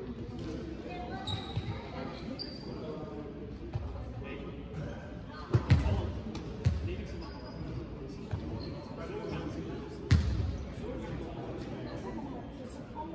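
A basketball bouncing on a sports-hall floor, with a few loud, separate thumps that echo in the large hall: two close together about halfway through and another near the end.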